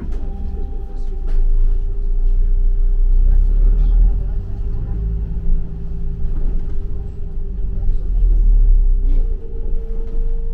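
Double-decker bus heard from inside: a steady low engine and road rumble that swells twice, with a constant hum and a few light rattles.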